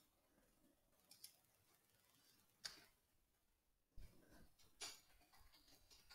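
Near silence broken by a handful of faint, scattered clicks of computer keyboard keys being typed.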